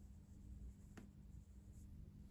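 Faint brushing of a small paintbrush laying leather dye onto a boot's leather upper, near silence otherwise, with one sharp click about a second in over a faint steady hum.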